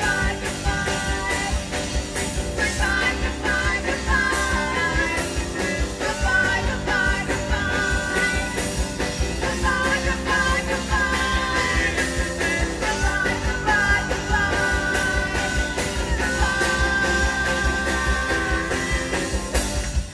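Live rock band playing a song with electric guitars, bass, drum kit and keyboard, with sung vocals over the top.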